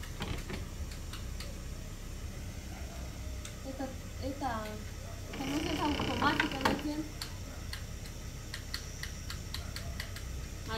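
Scattered sharp clicks and knocks from a wooden plank door's lock and latch being worked by hand, with faint voices in the background.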